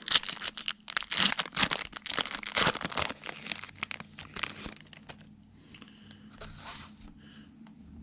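A foil Prizm football card pack being torn open and crumpled, with a dense, rapid crackle for about five seconds. It then drops to a faint rustle as the cards are slid out.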